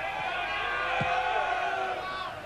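Football crowd in the stadium stands chanting, one long sung call held for about two seconds.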